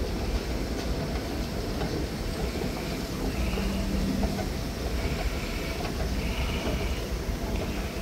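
Kone escalator running: a steady mechanical rumble, with a few brief higher tones on top partway through.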